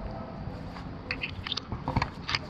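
Footsteps crunching on dry grass and soil, over a low rumble. Short crackling crunches come from about a second in.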